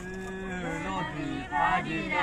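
A man's voice holds one long low note for about a second, then voices break into singing that grows loud near the end, the start of a group song.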